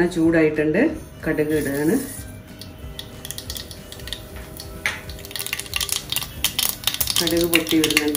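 Mustard seeds crackling and popping in hot coconut oil in a small saucepan: a rapid, irregular patter of small clicks that builds up over the second half.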